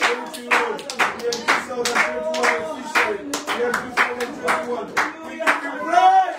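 Hands clapping in steady time, about two claps a second, over voices singing.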